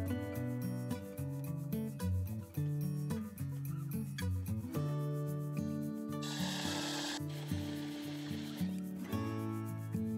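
Background guitar music throughout, with two bursts of a DeWalt cordless drill boring a cable-entry hole into the narrowboat's steel roof, about six and seven and a half seconds in.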